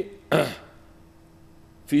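A man makes a short, throaty vocal noise between words, about half a second in, with the sound of a grunt or a throat being cleared. It is followed by a pause of over a second with only faint steady room hum before he speaks again.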